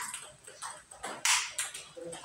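Table tennis multiball drill: a quick run of sharp clacks as the plastic ball is struck by paddles and bounces on the table, about three a second, with one louder hit just over a second in.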